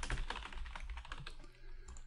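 Computer keyboard typing: a quick run of keystrokes that thins out and stops about one and a half seconds in.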